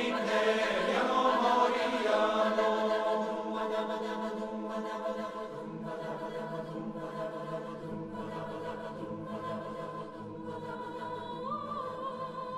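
Large mixed folk-jazz choir singing a cappella, holding sustained chords. Lower men's voices come in about halfway through and again later, as the sound grows gradually softer.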